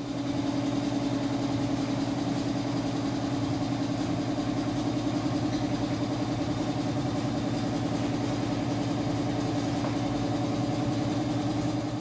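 Steady machine hum, a motor running at constant speed with an even, unchanging pitch.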